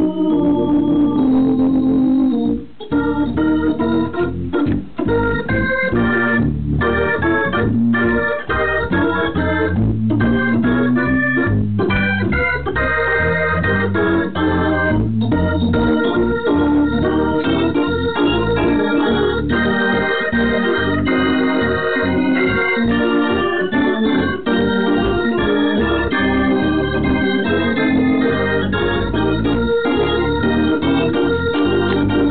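Hammond B3 organ played in gospel style: full sustained chords on both manuals, with a brief break about two and a half seconds in.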